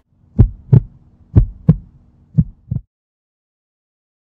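Heartbeat sound effect: three double thumps, lub-dub, about one a second, over a faint low hum. It stops abruptly just under three seconds in.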